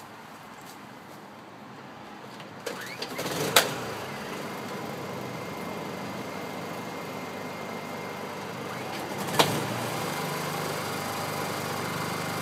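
Two warm Honda EU2000i four-stroke inverter generators being recoil pull-started one after the other without choke. The first catches on a single pull about three seconds in and settles into a steady idle. About nine and a half seconds in, the second is pulled, catches and joins it, and the combined running is a little louder.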